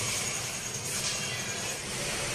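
Milk boiling hard in a large aluminium pot, a steady bubbling hiss, with faint background music.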